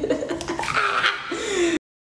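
A woman's wordless vocal sounds while she struggles into a tight mesh top, cut off suddenly to dead silence near the end.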